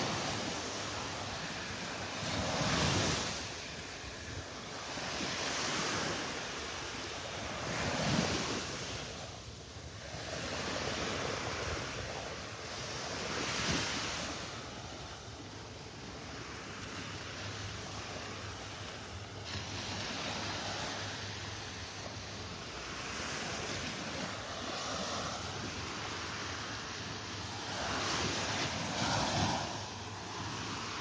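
Small Gulf of Mexico waves breaking and washing up the sand at the shoreline, a steady hiss of surf that swells and fades every few seconds.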